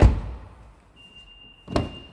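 The rear passenger door of a 2015 Mitsubishi Outlander PHEV is shut with a heavy thunk. About a second later a steady high warning beep from the car starts, because the ignition is still on. Near the end comes a sharper clunk from the front door handle and latch.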